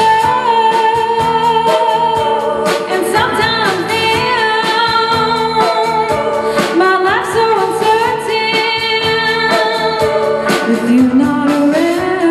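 Live rock band playing: electric guitar, bass guitar and drum kit, with sung vocals carrying long held notes over a steady drumbeat.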